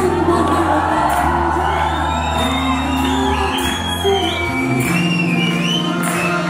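Live band music with singing: held low bass and keyboard notes under a gliding, ornamented high melody. The bass line shifts about four and a half seconds in.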